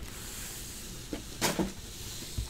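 A stack of foil-wrapped trading card packs being handled and shuffled on a table mat, giving a soft rustling with one louder knock-and-scrape about a second and a half in.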